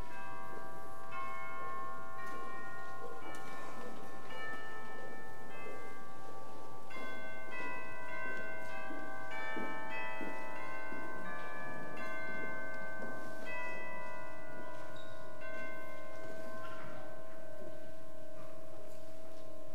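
Bells ringing: a run of pitched notes struck one after another, each ringing on so that they overlap into a sustained wash of tones.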